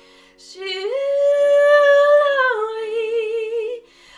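A woman singing a long wordless held note. After a quick breath she slides up to a high note and holds it for about a second and a half, then steps down to a lower note with vibrato that fades out near the end.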